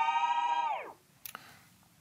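Short musical jingle: one held, pitched tone that swoops up at its start and bends down and dies away about a second in, followed by a faint click.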